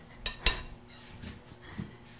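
Spoon clinking against a mixing bowl while scooping fruit filling: two sharp clinks close together early on, then faint handling noise.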